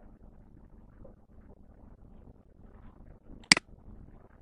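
A single sharp computer-mouse click about three and a half seconds in, over faint low background noise.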